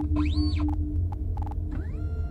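Sci-fi spaceship ambience sound effect: a steady low electronic hum under a pulsing tone, with short computer bleeps and pitch sweeps that arc up and back down, one near the start and another beginning near the end.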